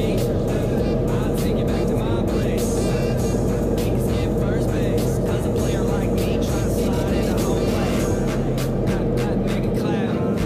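Pop song with singing over a steady drum beat.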